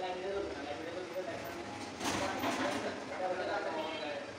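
People talking, with the words unclear.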